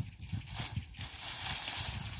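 Dry plant stalks rustling and crackling as they are handled and laid over a planted bed as a mulch cover, with a low, uneven rumble underneath.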